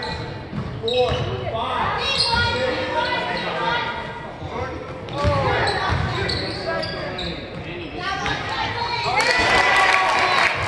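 Basketball game in a gym: the ball bouncing on the hardwood court, with shouts from players and spectators echoing in the hall.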